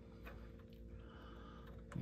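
Quiet, with a few faint metallic clicks as a nut is turned by hand on the ball joint stud, its threads just started.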